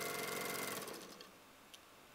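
Domestic sewing machine stitching a 2 mm zigzag quilting stitch through the layers of a quilt. It runs steadily, then slows and stops about a second in, followed by one faint click.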